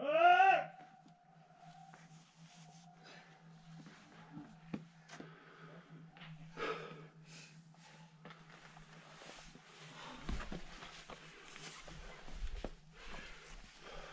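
A short, loud, rising vocal call lasting about half a second at the start. It is followed by quiet scrapes and knocks of scrambling on rock, with low wind rumble on the microphone in the second half.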